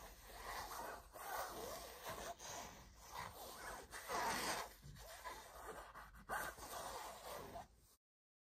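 Fingers and nails rubbing and scratching over a shiny zippered fabric cosmetic pouch, making irregular rustling, swishing sounds that cut off suddenly near the end.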